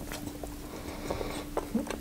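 Soft, close-up chewing of a cream-filled pastry tube, with a few faint wet mouth clicks over a low steady hum.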